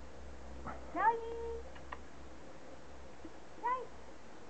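A cat gives a short meow near the end, rising and falling in pitch. Before it, about a second in, comes the loudest sound: a woman's high, drawn-out call to the cats.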